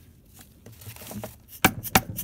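A plastic mallet striking the end of a closet-rod tube, tapping it into a differential's output side gear: two sharp knocks near the end, after a second and a half of faint handling clicks.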